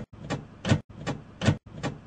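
Door handle and latch being rattled, a sharp click about every 0.4 s, chopped by short abrupt silent gaps into a stuttering loop. The door is locked and won't open.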